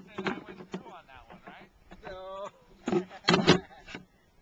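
People's voices in short remarks and a held exclamation, with a loud burst of scraping or knocking noise near the end.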